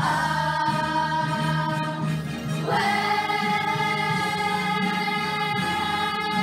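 A children's choir singing long held notes in unison, moving to a new note about halfway through.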